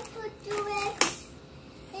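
A young child's voice making two short high-pitched sounds, then a single sharp click about a second in.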